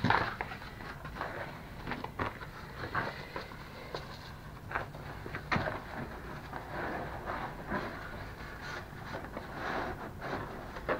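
Handling noise of a roll of carpet being unrolled and laid over two scooter batteries: scattered short knocks, clicks and rustles over a steady low hum.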